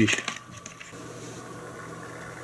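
A few light clicks and rustles in the first second as a boxed spool of braided fishing line is set down and the foam grip sticks are picked up, then a low steady room hum.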